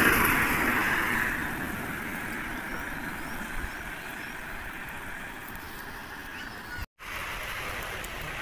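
Tyre hiss of a vehicle passing on a wet road, loudest at the start and fading away over about two seconds, followed by a steady, quieter wet-road and outdoor hiss. The sound drops out for a moment near the end, then resumes.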